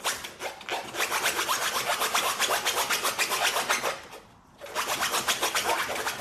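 A French bulldog digging at the mesh fabric of a raised dog cot, its claws scraping the taut fabric in rapid strokes, several a second. The scratching stops briefly about four seconds in, then starts again.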